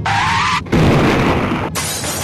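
Car tyres squealing under hard braking, a rising squeal for about half a second, then a loud crash about three quarters of a second in that runs on as continuing crashing noise.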